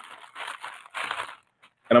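Plastic packaging of a face mask crinkling in a few short bursts as it is handled.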